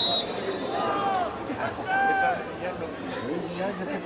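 A short, shrill referee's whistle blast right at the start, then players' voices calling out loudly over steady chatter at a rugby league match.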